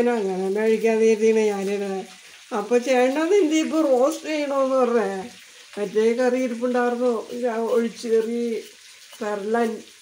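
A voice singing a slow tune in long held notes, some wavering in pitch, in phrases broken by short pauses.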